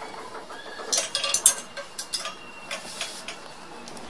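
Metal clinks and clicks of a small steel pot being gripped with metal pot tongs, lifted out of the larger pot of a double boiler and set on the counter: a cluster of sharp clinks about a second in, then a few lighter clicks.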